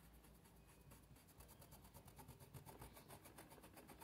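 Near silence: room tone, with faint rubbing of a paintbrush working paint into cloth.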